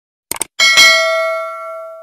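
A short double click, then a bell-like ding struck once, ringing in several clear tones and fading over about a second and a half.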